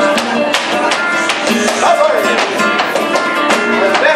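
Flamenco guitar playing alegrías, with rhythmic palmas (hand-clapping) giving sharp percussive strikes throughout.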